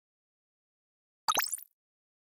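Short intro sound effect: a quick pop with a rising pitch and a sparkly high shimmer, starting a little past a second in and lasting under half a second.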